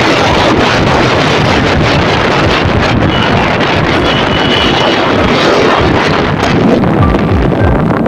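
Loud, steady wind buffeting on the microphone of a motorcycle riding at speed, over engine and road noise.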